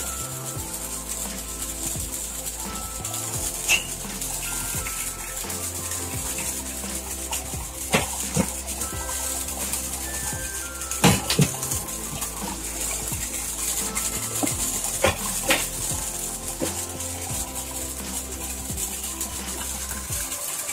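Background music over the steady rush of water flowing into and through a three-chamber koi pond filter box. A few sharp knocks come from the plastic filter lid being handled.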